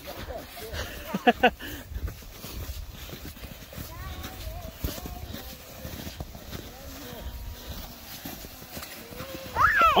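Boots crunching in snow at a walking pace while a chain of plastic sleds is towed by rope, the sleds scraping and bumping over the packed snow.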